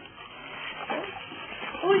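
Newborn baby whimpering softly while being dressed, with a woman's voice near the end.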